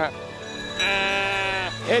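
Sheep bleating: one long, steady bleat lasting almost a second, starting about a second in.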